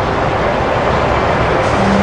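Steady rush of water pouring over Niagara Falls.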